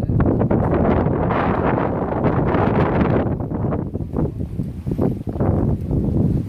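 Wind buffeting the microphone: a loud, gusting low rumble that rises and falls throughout.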